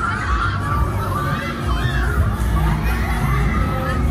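Riders on a Huss Flipper fairground ride screaming and shouting, many short overlapping yells, over fairground music with a steady bass.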